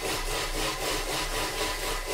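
Thermomix food processor blending a liquid egg and coconut-cream filling at speed 5 with its lid on. The whirring swishes in an even pulse of about six to seven beats a second.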